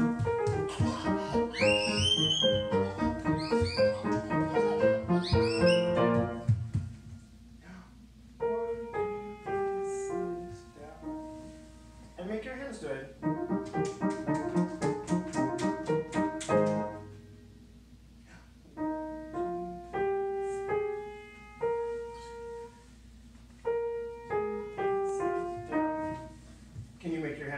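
Upright piano played live: a fast, busy stream of notes for about six seconds, then short rising and falling phrases separated by pauses. A high voice glides upward over the fast playing about two seconds in.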